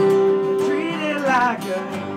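Steel-string acoustic guitar being played, with a held melody note over the picked strings that bends and slides downward in the second half.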